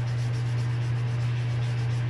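Soft scratching of a drawing tool stroking across paper as a smiling mouth is drawn, heard faintly over a steady low hum.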